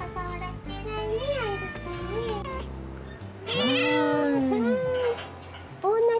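A cat meowing repeatedly: a few shorter meows, then a loud, long meow that rises and falls in pitch about three and a half seconds in, followed by another.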